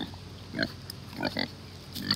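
Kune kune pig eating fallen acorns off the ground, with two short pig sounds about half a second and a second and a quarter in.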